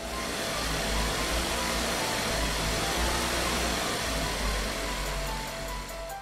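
A loud, steady rumbling and hissing noise with a deep low rumble, laid over soft piano music.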